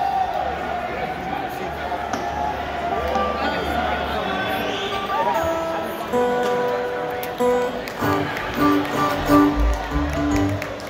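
A bluegrass band tuning its string instruments through the PA over crowd chatter. Single held notes sound from a few seconds in, and plucked notes with low bass thumps get busier near the end.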